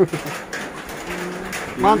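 Men's voices: a falling call at the very start, a single drawn-out low tone held through the middle like a hum or coo, and a short rising exclamation near the end, over light steady background noise.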